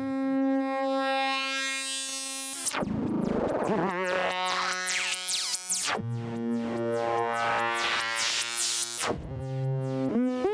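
Doepfer A-100 analog modular synthesizer playing a patch: a steady sawtooth tone, then from about two and a half seconds in a sound that sweeps up and down about twice a second over a held low note, with a falling glide just after the change.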